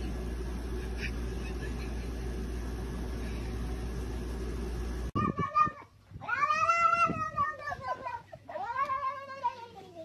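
A cat giving two long, drawn-out meows, each rising and then falling in pitch, the second shorter, with a few short calls near the end. Before them comes a steady low hum, which cuts off suddenly about five seconds in.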